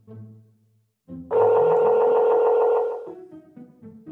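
A telephone ringback tone on a phone's speaker: one steady ring of about two seconds, starting just over a second in, as the outgoing call rings through. Soft background music plays under it.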